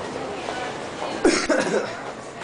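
A person coughing, a short burst of two or three coughs about a second in, over a murmur of voices.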